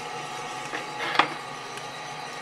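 Small drum coffee roaster running with a steady hiss, with a few sharp pops of beans in first crack, the loudest about a second in. First crack is rolling but not rolling crazy.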